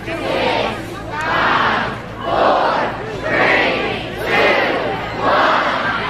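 A large crowd shouting a countdown together: six loud calls, about one a second, counting down to the lighting of the Christmas tree.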